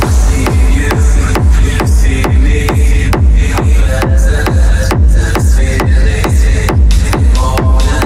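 Techno track with a heavy four-on-the-floor kick drum, about two beats a second, under a repeating synth riff.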